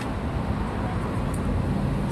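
Road traffic on a city street: a steady rumble of cars driving past.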